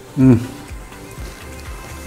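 A man's short "mmm" of approval while tasting food, followed by soft background music.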